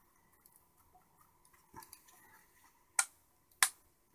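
White plastic case of a DIN-rail energy meter being pressed back together, with faint handling scrapes and then two sharp plastic clicks about half a second apart near the end as the front cover seats.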